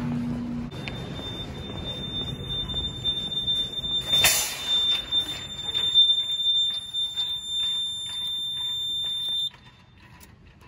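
Fire alarm system in alarm after a manual pull station was pulled: a steady high-pitched alarm tone that cuts off suddenly near the end as the control panel is silenced. A short burst of noise about four seconds in.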